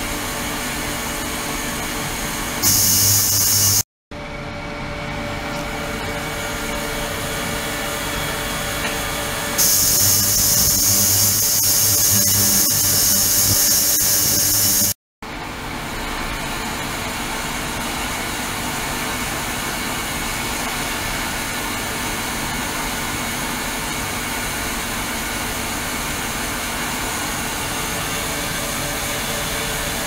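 Ultrasonic cleaning tank running: a steady hiss with several steady humming tones as the transducers agitate the water. It twice grows louder with a sharper high hiss, briefly before a sudden cut about four seconds in and again from about ten to fifteen seconds, ending in another sudden cut.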